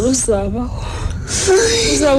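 A high-pitched voice speaking in a drama, broken by a breathy gasp about a second and a half in.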